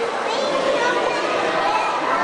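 Steady hubbub of many overlapping voices, children's among them, from a crowd in a large hall.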